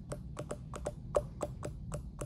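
Typing on a computer keyboard: a quick, even run of keystrokes, about six a second.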